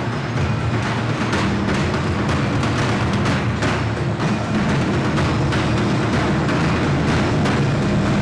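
Percussion music played by a group of drummers beating sticks on steel barrels, dense and loud, with a steady low bass underneath.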